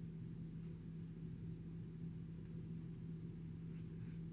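Faint steady low hum of room background noise, with no distinct sounds.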